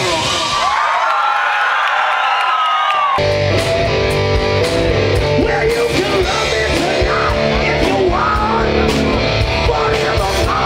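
Live rock band playing loud through a PA. For about the first three seconds the bass and drums drop out, leaving only high bending notes, then the full band comes back in with a singer's vocal over guitars and drums.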